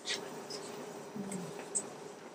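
Marker pen squeaking in several short strokes on flip chart paper, over a faint steady hum.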